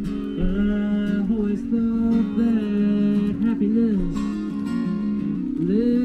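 A busker playing an acoustic guitar and singing, with the voice coming in about half a second in over the steady guitar chords.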